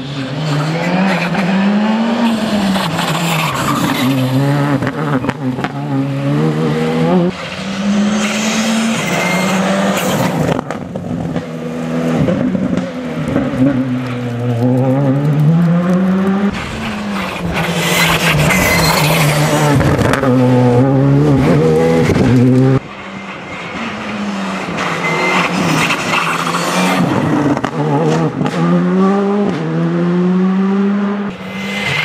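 Škoda Fabia Rally2 rally car's turbocharged four-cylinder engine driven flat out on a forest stage, revs climbing and dropping sharply through quick gear changes in several short passes. Loose gravel and grit hiss and spray from the tyres as the car slides through the bends.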